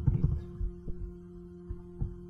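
A quick run of dull knocks, then a few single clicks, from a computer keyboard and mouse in use, over a steady electrical hum.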